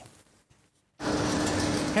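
About a second of near silence, then a steady hiss with a faint low hum cuts in abruptly: the indoor room sound of a shopping centre.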